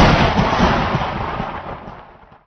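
Thunderclap sound effect: a loud rumbling crash that fades steadily away.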